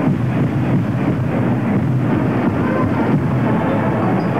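A large marching band playing, brass and drums, under steady crowd noise that echoes around a domed stadium.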